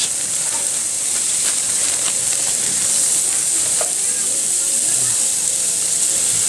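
New York strip steaks sizzling on a charcoal grill grate: a steady, even hiss.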